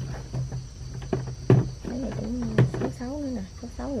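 Dry tamarind pods clicking and knocking against a woven bamboo tray as they are handled and sorted, several sharp knocks with the loudest about one and a half and two and a half seconds in. A steady high chirring of insects runs underneath.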